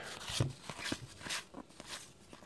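Stack of cardboard football trading cards being flicked through by hand: soft, irregular ticks and rustles as card slides over card.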